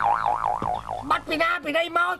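A wobbling cartoon 'boing' sound effect, its pitch swinging up and down about five times in roughly a second before it stops.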